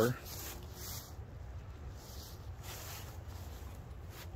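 Faint, intermittent rustling and rubbing of rope, with a few soft swishes. It sounds over a steady low background rumble.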